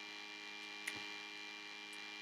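Faint steady electrical hum in the recording, with one small click about a second in.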